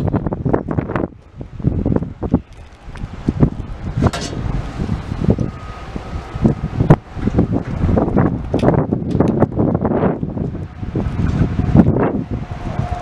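Wind buffeting the microphone in irregular gusts, loud and low, with no machine running.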